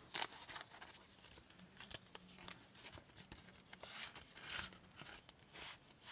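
Faint rustling and crinkling of clear plastic cash envelopes being handled and turned in a ring binder, with scattered light clicks.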